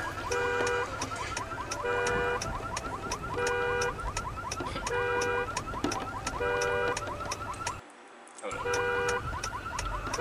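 Car alarm sound in a rap track's outro: a warbling whoop alternating with a steady stacked beep, repeating about every second and a half. The sound drops out for about half a second near the end.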